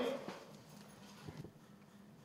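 A voice trails off, then faint room noise with a steady low hum and two soft knocks, the first just after the voice ends and the second about a second later.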